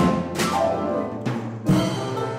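Live jazz band with electric guitar, trombone, drum kit and electric keyboard playing accented ensemble hits with cymbal crashes, sustained chords ringing between them: a hit at the start, another shortly after, and a third near the end.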